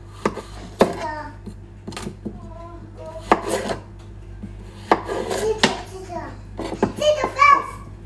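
Chef's knife cutting through zucchini onto a cutting board: about half a dozen sharp knocks at an uneven pace as the blade hits the board. Children's voices in the background.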